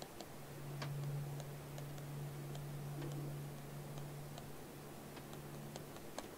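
Faint, irregular ticks of a pen stylus tapping and writing on a digital tablet, over a low steady hum.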